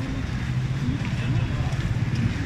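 Indistinct voices of people talking over a steady low rumble of a vehicle engine running close by.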